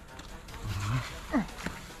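Cobra hissing in defence, hood spread and reared up: a faint breathy hiss that swells about half a second in.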